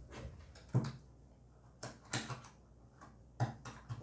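A few short, sharp metallic clicks and taps of fingers working at the ring pull of a metal food tin, which will not lift.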